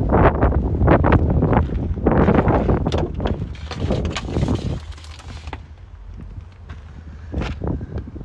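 Wind buffeting the microphone, a loud low rumble broken by knocks and rustling, which drops away about five seconds in.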